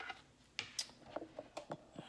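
Several light, sharp clicks and taps from handling, spread unevenly over about two seconds.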